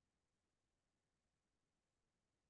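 Near silence: a faint, even background hiss with no distinct sounds.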